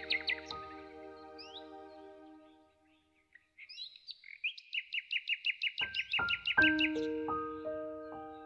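Songbird singing over soft solo piano. Piano notes die away in the first couple of seconds and it goes almost silent briefly. A bird then sings a quick trill of about five notes a second, and new piano notes come in under it in the second half.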